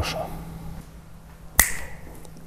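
A single sharp snap-like click about one and a half seconds in, with a brief ring after it, over quiet room tone.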